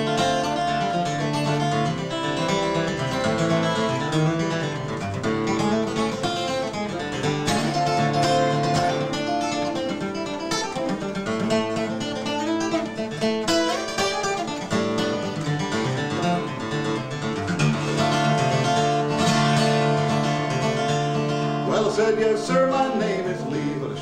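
Solo steel-string acoustic guitar played flatpick style: a fast instrumental break of single-note melody and bass runs between sung verses of a traditional bluegrass song.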